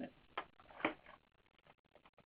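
Faint clicks: two sharper ones in the first second, then a run of very quiet ticks.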